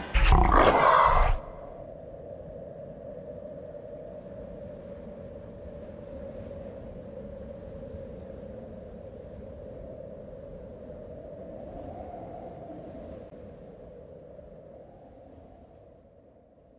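A short, loud animal-like roar sound effect that cuts off abruptly, followed by a low, steady, ominous drone that slowly fades out near the end.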